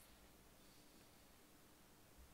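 Near silence: a faint steady hiss with a faint low hum.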